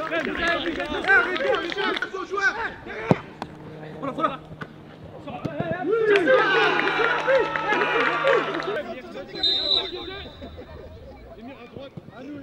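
Several men shouting and cheering over one another after a goal. There is a sharp knock about three seconds in, the voices die down near the end, and a brief high tone sounds shortly before they fade.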